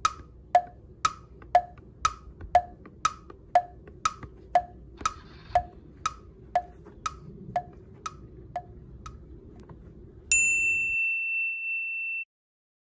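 Wood-block tick-tock, like a clock, about two ticks a second alternating low and high, stopping after about nine seconds. Near the end a sudden bright ding rings steadily for about two seconds.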